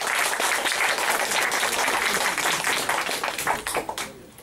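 Audience applauding, steady clapping from many hands that stops abruptly near the end.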